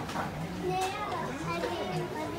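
Indistinct talk: several voices speaking at once, a child's voice among them.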